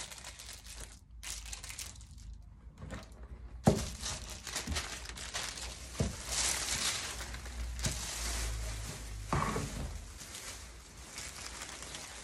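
Crisp packets and baking paper rustling and crinkling as they are handled and pressed with an iron, broken by a few sharp knocks, the loudest about a third of the way in.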